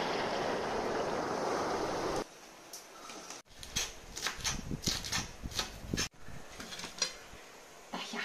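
Water rushing in a shallow rocky tide pool, an even noise for about two seconds. After a break, a kitchen knife chops green onions on a wooden cutting board, quick strokes about four a second for a couple of seconds, followed by a few scattered knocks.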